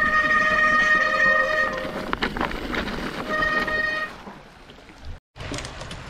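Mountain bike disc brake squealing in a steady high tone for about two seconds, then again briefly near the middle, over the rattle of tyres rolling on a rocky trail. About five seconds in, a sudden cut leaves a much quieter outdoor background.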